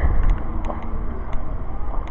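Wind rumbling on the microphone of a handheld camera carried outdoors, with a few faint ticks.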